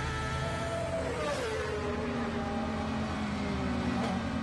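Racing motorcycle passing at high speed, its engine note dropping sharply in pitch about a second in as it goes by with a brief rush of air, then running on at a lower, steadier pitch.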